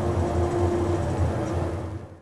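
A steady low rumble with a faint held humming tone above it, from the soundtrack of the series being watched; it eases off right at the end.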